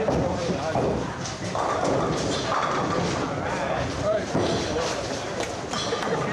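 Bowling-alley din: indistinct chatter of voices over the rumble of a bowling ball rolling down the lane and the clatter of pins.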